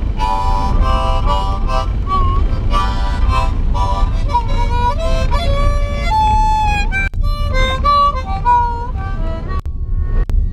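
Harmonica played with the hands cupped around it: chords at first, then a single-note melody with some notes sliding in pitch. It breaks off briefly about seven seconds in and again near the end, over the steady low rumble of a moving car's cabin.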